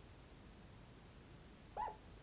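Faint room tone, then near the end one brief high squeak from a marker dragged across the glass of a lightboard.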